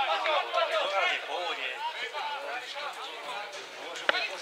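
Men's voices chatting, close to the microphone and not clearly made out.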